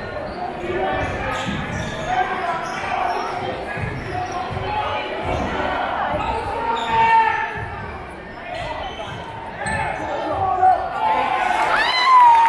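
A basketball being dribbled on a hardwood gym floor, bouncing repeatedly, in a large echoing gym with crowd voices around it.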